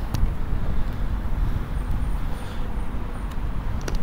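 Steady low rumble of outdoor background noise, uneven in loudness, with no distinct events.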